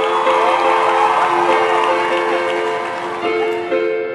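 Electronic keyboard holding a few steady notes, under the murmur of many voices in a large crowd.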